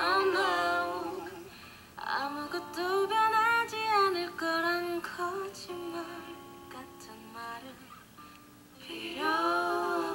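A woman singing a slow R&B song in long, gliding phrases over sparse backing, with short breaks between phrases about two seconds in and again near the end.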